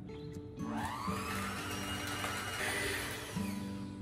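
Black+Decker Helix electric hand mixer switching on about half a second in and speeding up, its beaters whirring through soft butter and cream cheese in a metal bowl.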